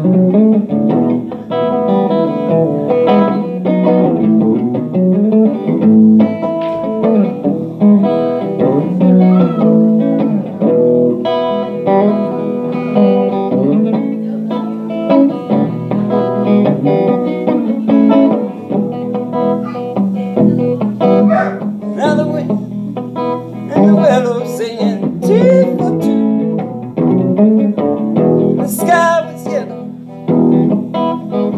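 Electric guitar played live as an instrumental passage of picked notes and chords, with some bent notes near the end.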